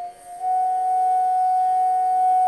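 Carnatic bamboo flute holding one long, steady note that begins about half a second in, after a short break in the phrase.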